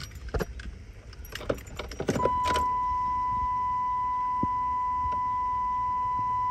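Keys jangling and clicking at the ignition, then, about two seconds in, a steady high electronic warning tone from the dashboard comes on and holds without a break: the key is at the on position with the warning lamps lit, before the engine is cranked.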